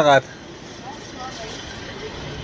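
A voice for a moment at the start, then steady outdoor street background noise with a low rumble and faint distant voices.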